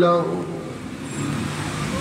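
A man's chanted sermon voice holding a note that fades out just after the start, followed by a pause filled with a steady, even background noise.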